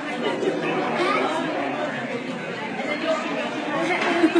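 Indistinct chatter of many voices talking at once in a busy restaurant dining room.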